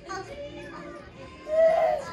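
A toddler's voice: quiet babble, then a short, loud, high-pitched vocal sound near the end.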